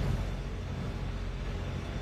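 Steady low rumble of city street and vehicle noise, with no single event standing out.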